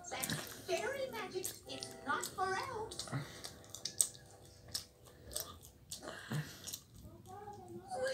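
Cartoon soundtrack from a television heard across a small room: character voices babbling without clear words, a short held musical tone about two to three seconds in, and scattered sharp clicks.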